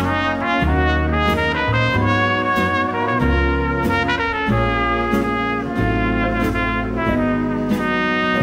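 Swing big band playing an instrumental passage of a slow ballad: brass in harmony with a trumpet lead, over a bass line that moves from note to note.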